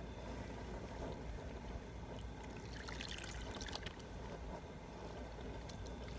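Wet wool fiber being gathered by hand in a plastic tub of soaking water, then lifted out so water streams and drips back into the tub, with a brighter patch of splashing and trickling about three seconds in.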